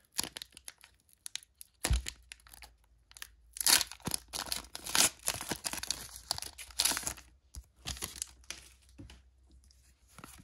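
A Pokémon booster pack's foil wrapper being torn open by hand. It gives a run of crinkling, crackling tears that are loudest in the middle few seconds and then thin out.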